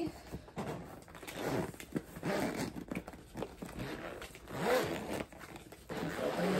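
Zipper on a zippered cosmetic bag being pulled open in several uneven pulls.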